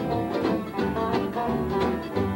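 Live acoustic bluegrass jam: banjo picking over a strummed flat-top acoustic guitar, playing continuously.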